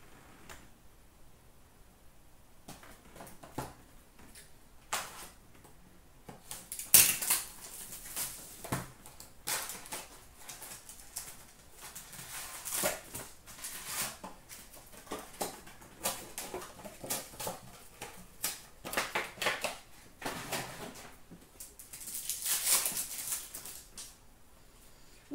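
Trading-card pack wrappers crinkling and tearing open, with cards slid and shuffled against each other in the hands: a string of sharp crackles, sparse at first and dense through the second half.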